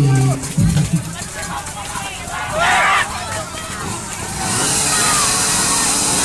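Crowd voices at an outdoor competition: chatter with loud shouts near the start and again about two and a half seconds in. A steady hiss comes in about four and a half seconds in and holds.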